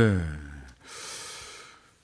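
A man's drawn-out "yes" trailing off, then a long in-breath close to the microphone, lasting about a second.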